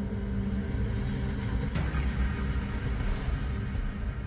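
A felled hardwood tree coming down: low rumbling and rustling, with one sharp crack a little under two seconds in.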